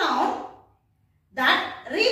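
A woman's voice speaking, broken by a short silent pause in the middle.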